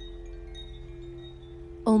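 Soft ambient background music: a held low chord with faint, thin chime-like high notes above it.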